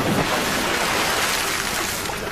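A heavy splash as a person falls backward into water, followed by a loud rush of spray and churning water that slowly fades.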